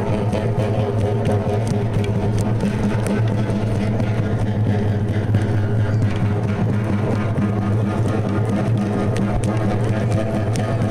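Rarámuri (Tarahumara) dance music played live: large frame drums over a steady low drone that holds one pitch throughout.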